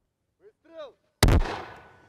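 A brief shout, then about a second in a single loud shot from an American M224 60 mm mortar firing a round. The report dies away over the following second.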